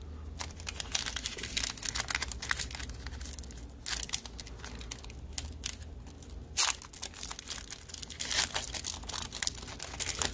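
A foil trading-card pack wrapper crinkling and tearing as it is handled and ripped open by hand, with a few louder sharp rips partway through.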